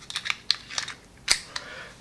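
Metal clicks of a magazine being pushed into the grip of a Colt Mustang .380 ACP pistol, a quick string of small clicks with a louder click a little over a second in.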